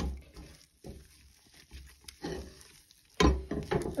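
A silicone spatula stirs a thick, doughy hot-process beeswax soap paste in a stainless steel pot, making soft squelching and scraping sounds. There is a short knock at the start and a louder burst of sound near the end.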